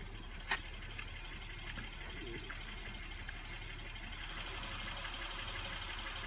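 A car engine idling with a steady low hum, with a single click about half a second in and a faint hiss that grows in the second half.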